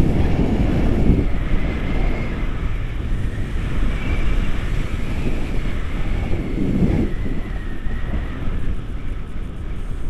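Wind noise on the camera microphone of a paraglider in flight: a steady low rush that swells briefly near the start and again about seven seconds in, with a faint wavering high whistle above it.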